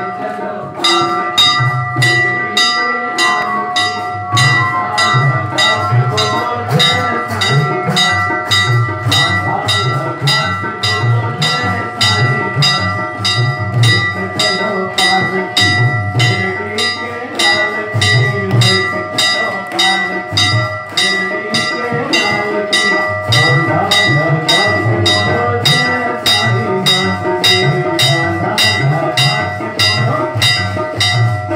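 Aarti music: a bell struck rapidly and evenly, about three to four strokes a second, over a sustained metallic ringing and a pulsing drum beat.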